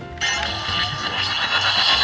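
Treasure X Robots Gold toy robot playing its electronic power-up sound effect through its small built-in speaker, starting suddenly just after its button is pressed with the power core fitted.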